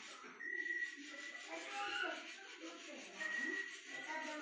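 Low voices talking in the background, with a thin steady high-pitched tone that sounds twice, first near the start and again near the end.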